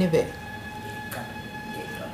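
A steady, high-pitched tone with evenly spaced overtones, held for nearly two seconds over a faint hiss, just after the end of a spoken word.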